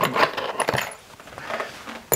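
Small metal parts clinking and rattling as they are picked up and handled on a workbench, a quick run of light clicks in the first second, then fainter.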